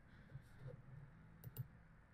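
Near silence with a few faint computer clicks, two of them close together about one and a half seconds in, as a line of code is run.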